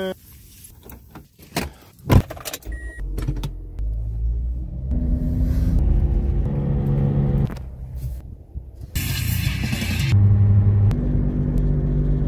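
Car engine and road noise heard from inside the cabin while driving, the engine pitch jumping abruptly between levels several times. A sharp click about two seconds in.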